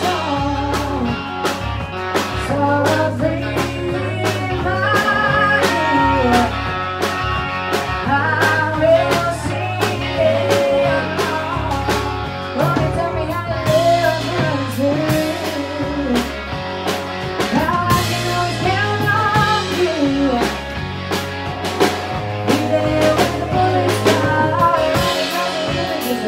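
Live rock band: a woman singing lead into a microphone over electric guitar, bass guitar and a drum kit, her voice gliding and holding notes in long phrases over a steady bass line and beat.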